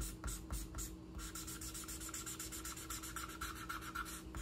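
Thick black felt-tip marker scrubbing back and forth on paper to fill in a solid area, the marker running out of ink. Quick separate strokes for about the first second, then a steady continuous scratching.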